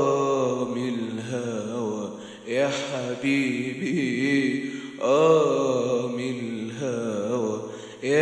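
A singer's voice holding long, wordless melismatic phrases with a wavering vibrato, in Arabic song style. There are three drawn-out phrases about two and a half seconds apart, each starting strong and fading.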